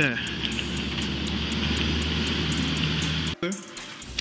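Steady outdoor rumble and hiss with a low hum underneath, picked up by a police body camera's microphone; it cuts off abruptly about three and a half seconds in.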